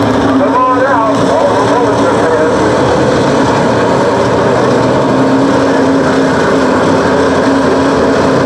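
Dirt-track race car engine idling steadily, with a voice heard briefly about a second in.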